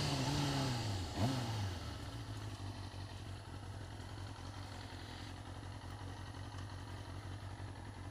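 Motorcycle engine dropping in pitch as the bike slows, with a brief rev blip about a second in, then settling to a steady idle.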